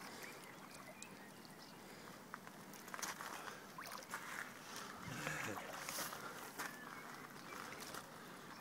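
Faint water sloshing and a few light splashes as a large wels catfish is held upright in shallow water and moved by hand to revive it for release.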